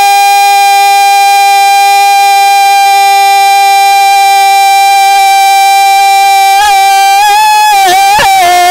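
A man's voice holding one long, high note in a naat recitation, amplified through a microphone and public-address system, with a brief waver about six and a half seconds in before the line moves on.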